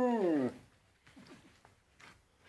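Siberian husky giving a howl-like vocal call, held at one pitch, then sliding down and ending about half a second in. A few faint scuffs follow.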